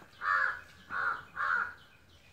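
Crow cawing three times, about half a second apart.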